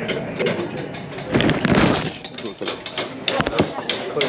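A rapid mechanical clicking rattle, loudest for about a second near the middle, among scattered sharp clicks and knocks.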